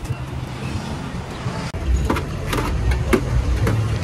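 A steady low rumble, and from about halfway through a run of sharp knocks, about two a second.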